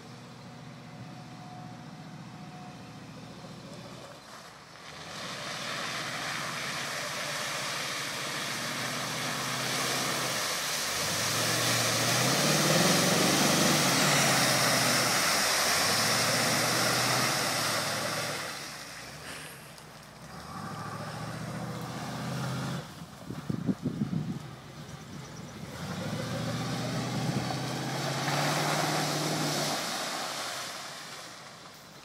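Chevrolet K5 Blazer engine revving up and down in repeated surges as the truck ploughs through a mud pit, with tyres churning and mud and water spraying, loudest in the middle. A quick run of sharp knocks comes about two-thirds of the way through.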